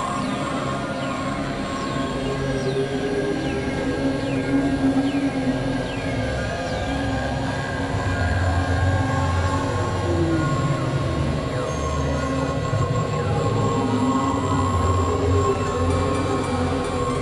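Dense, layered experimental electronic music: steady low drones and held tones, with short high-pitched glides falling in pitch and repeating about once a second through the first half.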